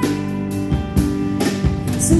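Live band playing an instrumental passage: sustained electric guitar chords over a drum kit, with several sharp drum and cymbal hits.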